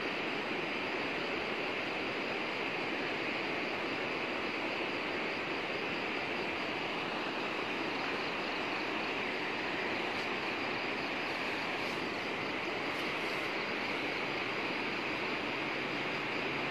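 Steady, unbroken rush of running water, a swollen stream flowing through landslide mud and debris.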